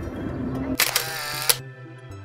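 Camera shutter sound, about a second in: two sharp clicks roughly 0.7 s apart with a burst of noise between them, louder than the soft background music.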